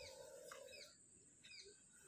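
Near silence with faint bird chirps: a few short, high, falling calls, over a faint steady tone that stops about a second in.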